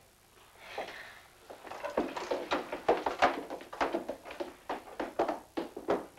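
Footsteps of two people climbing a staircase: a run of irregular knocking steps, roughly three a second, starting about a second and a half in.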